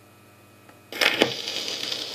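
A stylus set down on a spinning 78 rpm record about a second in gives a couple of sharp clicks. The steady hiss and crackle of the record's lead-in groove follows, before the music begins.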